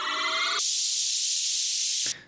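Two electronic audio samples played back one after the other. A synth riser, a stack of pitched tones slowly climbing, switches abruptly about half a second in to a loud, bright white-noise hiss that holds steady and then cuts off. The hard cut between them is the un-crossfaded join between two back-to-back clips.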